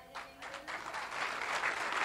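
Congregation applauding: a few scattered claps at first, building into steady applause.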